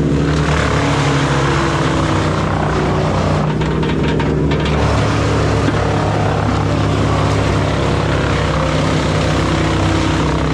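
A Bandit wood chipper and the grapple loader feeding it running together: a loud, steady engine drone while the grapple pushes brush into the chipper's infeed.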